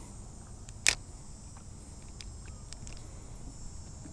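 Handling of a fishing rod and line from a boat: one sharp click about a second in, then a few faint light ticks, over a steady low rumble and a faint high hiss.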